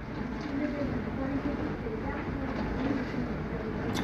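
Steady low background rumble with faint, indistinct voices in the background.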